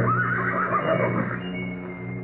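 A horse whinnying, a wavering call of about a second at the start, over sustained orchestral music.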